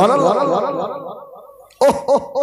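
A man's long, chanted "Allah" with a wavering pitch, fading away over about a second and a half. Near the end he breaks into quick, repeated laughter.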